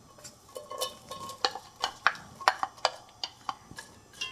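Sliced onion being scraped out of a glass bowl with a knife into a pot: an irregular run of short scrapes and clicks as the blade works against the glass and the slices drop into the hot olive oil.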